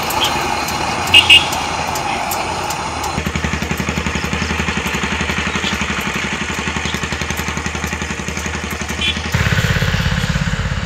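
Street traffic: a small engine idling with an even rapid low pulsing beat, and two short, loud horn beeps about a second in. A louder engine joins near the end.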